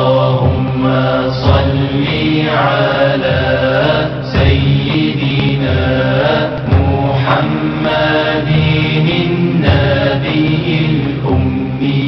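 Devotional Arabic chant of the salawat, blessings on the Prophet Muhammad, sung in long drawn-out gliding phrases over a low steady drone.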